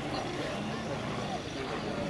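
Rolls-Royce Merlin V12 engine of a Hawker Hurricane flying a display pass overhead, a steady propeller-driven drone, with voices faintly in the background.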